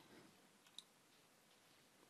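Near silence: faint room tone, with a single short, faint click a little under a second in.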